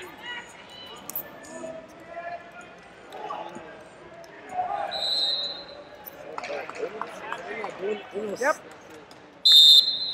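Coaches and spectators shouting in a large arena hall while wrestlers hand-fight. A short whistle tone comes about halfway through. Near the end a loud, steady referee's whistle blast stops the bout for a passivity call.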